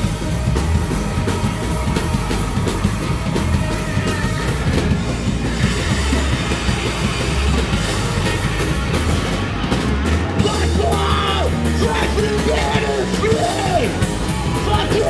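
Punk rock band playing live: electric guitar, bass and drum kit, with vocals coming in near the end.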